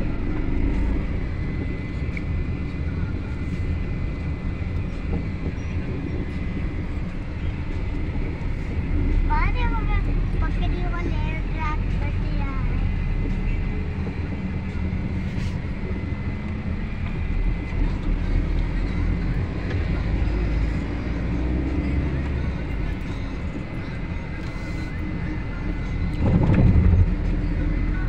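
Car cabin noise while driving: a steady low rumble of engine and road, with a brief swell near the end.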